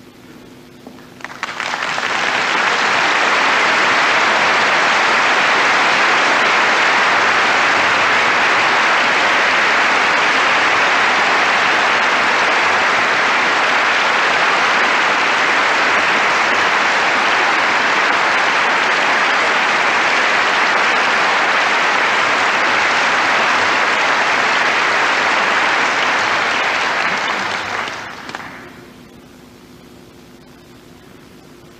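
Concert-hall audience applauding as the soloist walks on stage. The applause swells in about a second in, holds steady, and dies away near the end.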